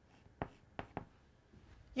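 Chalk on a blackboard: a few short, sharp taps and strokes as a character is written.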